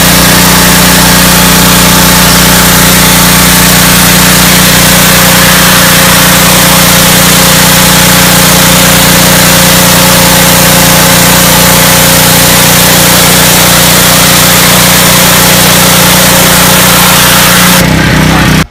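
Gas pressure washer with a Honda GC190 single-cylinder four-stroke engine, running steadily under load, with the loud hiss of its fan-tip nozzle spraying water onto wooden deck boards.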